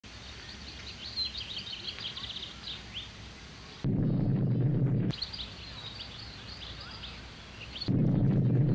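Small birds chirping in many short, high, quick calls and trills. A little under four seconds in, a louder low-pitched noise cuts in for about a second, then the chirping resumes.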